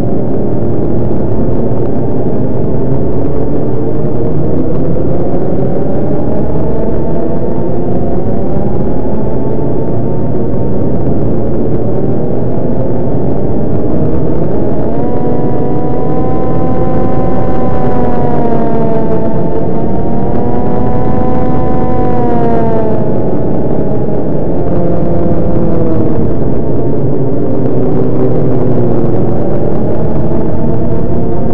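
Electronic drone from the DIN Is Noise software synthesizer: a dense, steady chord whose many tones slowly glide up and down. About halfway a brighter set of tones comes in, bends, and slides down again a few seconds later.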